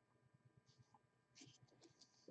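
Near silence: room tone, with a few very faint short specks of sound just before the end.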